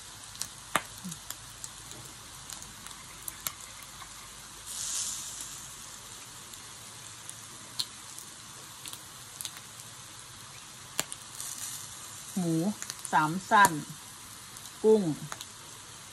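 Pork belly and shrimp sizzling on a mookata tabletop grill-hotpot: a steady sizzle with scattered pops of fat and a short louder hiss about five seconds in.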